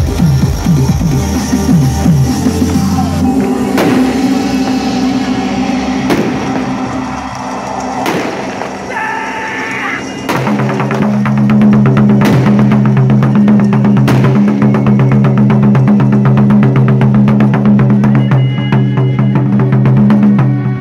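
Loud amplified backing music with big drum strikes. In the first half there is a single heavy hit every two seconds or so. From about halfway a steady low bass drone sets in under a fast, dense beat.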